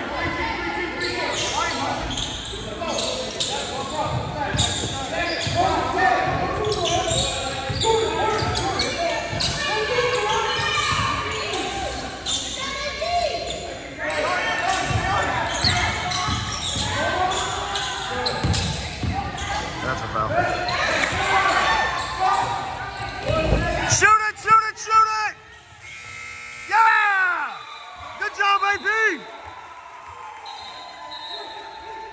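Basketball bouncing on a hardwood gym floor amid players' and spectators' voices, echoing in a large hall. Near the end the voices thin out and a few short, sharp squeaks stand out.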